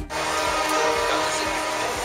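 A pop song cuts off abruptly at the start, and a children's violin ensemble follows, playing live with sustained notes.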